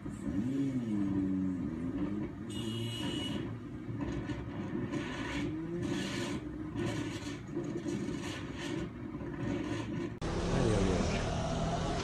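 Motorcycle engine heard from the rider's helmet camera, its pitch rising and falling several times as the rider speeds up and eases off, over a steady rush of road noise. About ten seconds in, the sound cuts suddenly to a louder, noisier background.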